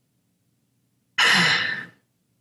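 A person's sigh: one loud, breathy exhale that starts about a second in and fades out within a second.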